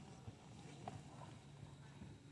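Near silence in a large indoor arena: a low steady hum with faint, soft hoof falls of horses trotting on deep sand footing.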